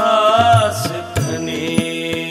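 Sikh shabad kirtan: a man's voice sings a held note with wavering pitch, over harmonium and tabla. The voice drops away just under a second in, leaving the steady harmonium tones and tabla strokes.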